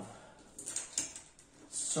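Faint, brief handling noises of small craft pieces being picked up and moved on a worktable: a few short scrapes or clicks about half a second in.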